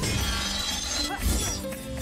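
Film soundtrack of a lightsaber duel: orchestral score music with lightsaber clashes and the crackle of blades striking, a louder strike a little past a second in.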